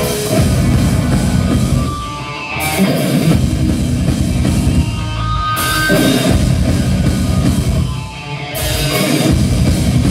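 Live metalcore band playing a heavy riff on distorted electric guitars, bass and drum kit. Cymbals crash back in about every three seconds, between short, slightly quieter breaks.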